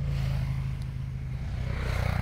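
A motor engine running nearby: a steady low hum with a rushing noise that swells toward the end.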